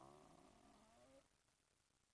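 Near silence: the faint tail of a man's drawn-out hesitation "uh" fades out within the first second, then quiet room tone.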